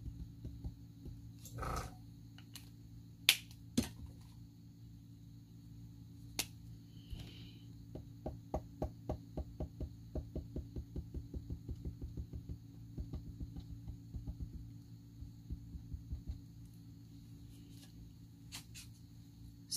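Alcohol ink marker working on glossy photo paper over a low steady hum. A few sharp clicks come in the first few seconds as markers are swapped, then a quick run of light taps of the marker tip, about five a second, through the middle and latter part.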